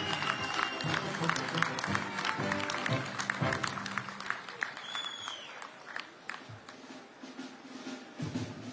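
Audience applause over background music. The clapping is densest in the first few seconds and thins out toward the end.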